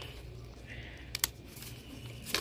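Small paper notebook being opened by hand: a soft rustle of the cover and pages, with two small sharp clicks just past the middle, over a steady low background hum.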